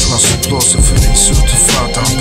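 Hip hop track: a beat with deep bass and crisp high drum hits, with a rap vocal over it.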